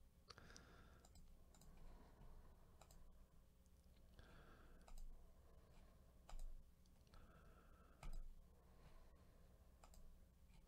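Faint computer mouse clicks, a handful spread across a near-silent room, as a web page button is clicked repeatedly.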